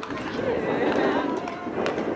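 Several people talking at once: overlapping background chatter, with two short sharp clicks in the second half.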